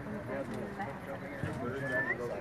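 Chatter of many people talking at once, several overlapping voices with no single one standing out.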